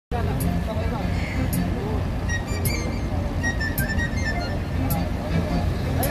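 Steady low engine rumble of a river ferry, with voices talking over it and faint high clicks about once a second.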